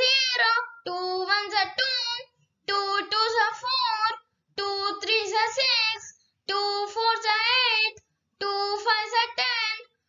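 A child's voice reciting the two times table in a sing-song chant, one line at a time, with a short pause between lines.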